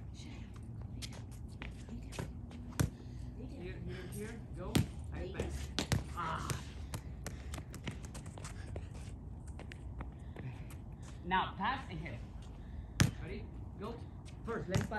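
Soccer ball being kicked and bouncing on concrete: a handful of sharp thuds a second or more apart, the loudest near the end.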